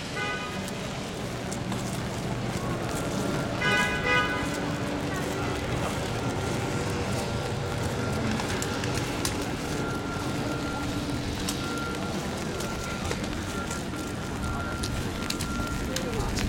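Steady hiss of rain on a wet city street, with the voices of a crowd waiting in line under umbrellas. A short pitched sound stands out about four seconds in.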